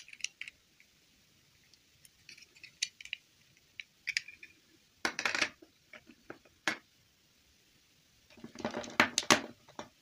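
Small plastic dolls being handled and set down on a tabletop: scattered light clicks and taps, with a short clatter about five seconds in and a longer one near the end.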